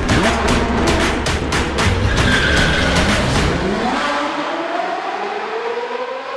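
Car sound effect in a branding sting: a sudden loud start with a quick run of sharp pulses, then an engine revving up, its pitch rising over the last few seconds.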